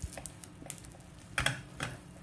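Fingertips pressing and patting soft, sticky flatbread dough flat in a nonstick frying pan: irregular soft taps and wet pats, with the loudest few coming about one and a half seconds in.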